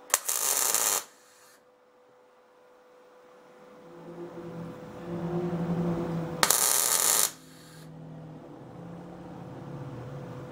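Wire-feed (MIG) welder laying two short tack welds, each a crackling hiss of about a second, one right at the start and one about six and a half seconds in, as a bolt is welded under a small steel door-latch bracket. A low hum builds up in between.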